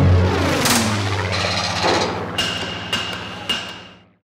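Title sting of sound-designed music: a heavy low hit at the start, sweeping swishes, then a run of sharp clicks and knocks with a thin high ring, fading out near the end.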